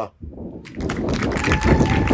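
A seated crowd applauding, the clapping starting about half a second in after a brief pause and running on as dense, even clapping. A steady high tone joins about halfway through.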